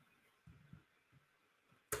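Near silence: faint room tone with a few soft low bumps, then one sharp click near the end.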